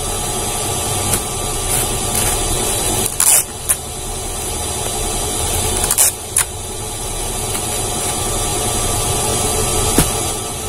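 Clear plastic packing wrapped around a bundle of ironed clothes crinkling in short crackles as hands press and turn the package, a few times in the first few seconds and twice about six seconds in. A steady mechanical hum runs underneath.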